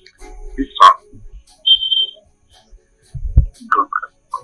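Telephone-call recording with no clear words: a sharp click about a second in, a short high beep near the middle, a low thud after three seconds, and a brief muffled voice sound near the end.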